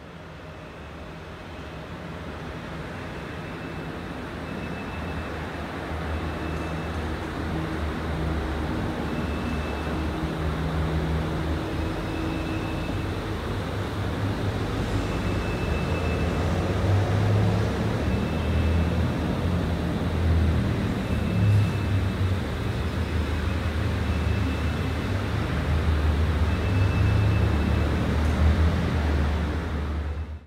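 A low, steady rumbling roar with a hiss over it, swelling gradually louder, with faint short high beeps coming about every two seconds.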